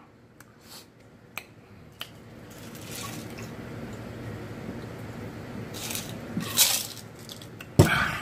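A man gulping down a drink from a tall glass in one long, steady draught of about five seconds. There is a louder burst near the end of the drinking and a sharp knock just before the end.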